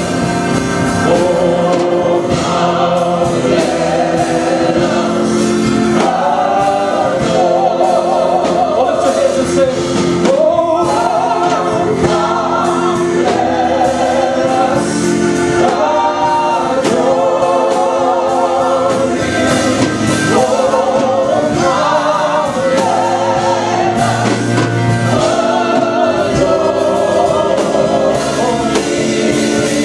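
Gospel praise team of several voices singing together in harmony into microphones, with electric keyboard accompaniment; long held notes that waver in pitch.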